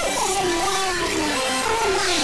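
A cartoon cat's voice, distorted by audio effects, in one long wavering call that slides down in pitch, over steady background music.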